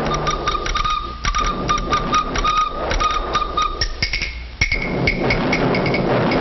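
Old cartoon soundtrack effects: a held high tone over a quick, uneven run of sharp taps. The tone jumps about an octave higher around four seconds in, with a single sharp knock just before five seconds.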